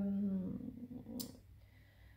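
A woman's drawn-out hesitation sound "euh", held on one low pitch and trailing off in the first half second. Then a quiet room with a single faint click about a second in.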